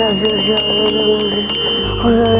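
Magic-spell sound effect: a glittering run of chime strikes over a held, wavering musical tone.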